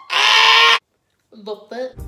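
A woman's loud, high-pitched squeal, lasting under a second, made in play. A few quieter spoken sounds follow near the end.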